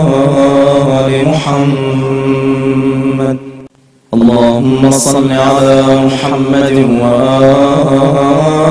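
Chanted vocal music with long held, slowly gliding notes over a steady low drone. It cuts out for about half a second a little before the middle, then resumes.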